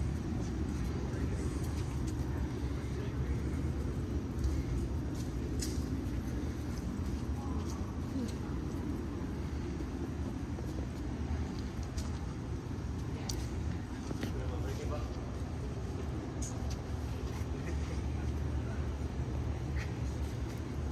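Outdoor background: people talking in the background over a steady low rumble, with a few faint clicks.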